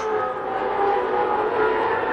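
Open-wheel race car engines running at speed on the broadcast feed, a steady high whine that shifts slightly in pitch as the cars go by.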